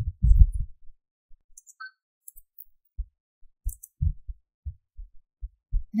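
Dull low thuds of keyboard and mouse use carried through the desk to the microphone: a quick cluster in the first second, then single soft taps about half a second apart.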